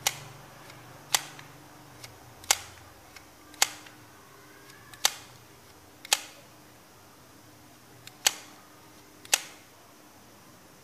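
Bail arm of a spinning fishing reel flipped open and snapping shut, eight sharp clicks roughly a second apart with fainter ticks between them. The bail now springs back firmly, the sign that its return spring has been repaired.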